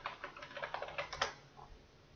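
Computer keyboard typing: a quick run of keystrokes that stops a little over a second in.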